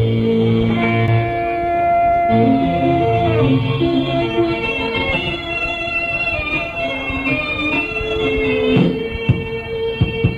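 Live punk band with electric guitar holding long, ringing notes and chords that change every second or two, then a few drum hits near the end.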